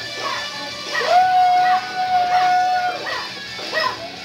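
A woman singing karaoke into a microphone over a backing track, holding one long high note for about two seconds in the middle.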